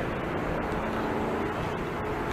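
Busy city street traffic: a steady wash of road noise with a faint, even engine hum underneath.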